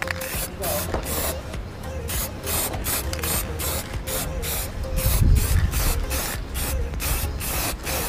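Aerosol spray-paint can hissing in short repeated bursts, about two or three a second, as a first coat of gloss black is sprayed onto a plastic scooter fairing.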